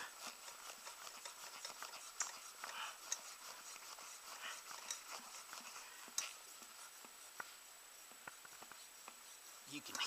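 Faint steady hiss of air leaking from the pressurized lower unit of a 1964 Johnson 18 outboard, with scattered small clicks. The gearcase is not holding pressure, a sign of a bad seal, either the drive shaft seal or the shift seal.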